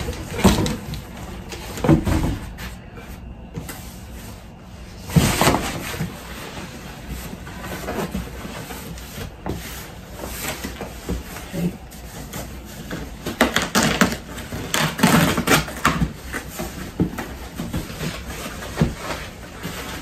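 Cardboard shipping boxes being handled and opened, with irregular scrapes, rustles and knocks of cardboard. The noise is loudest about five seconds in and again for a few seconds past the middle.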